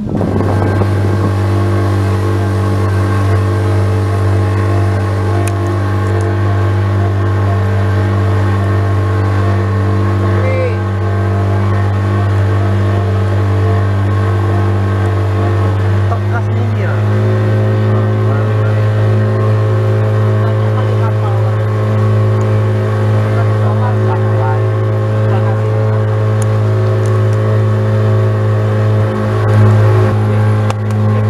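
Small boat's engine running steadily, its pitch stepping up slightly about halfway through.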